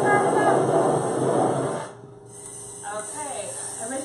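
Handheld kitchen blowtorch running with a steady, loud hiss that cuts off suddenly about two seconds in. Faint voices follow.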